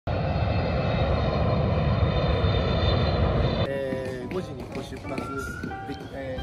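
Jet airliner passing low overhead: loud, steady engine noise with a high whine of steady engine tones, which cuts off suddenly about three and a half seconds in. Voices and music follow.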